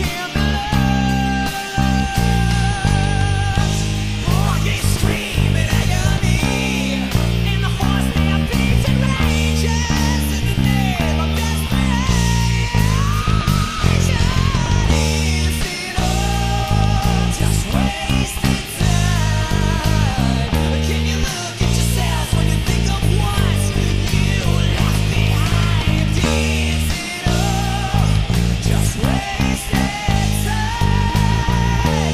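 Five-string electric bass playing a rock ballad's bass line along with the full band recording: guitars and a singing voice over a stepping line of bass notes, moving into the chorus about halfway through.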